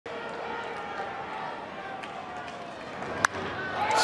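Ballpark crowd murmur, then a single sharp crack of a baseball bat hitting a pitched ball a little over three seconds in, with the crowd noise swelling after it.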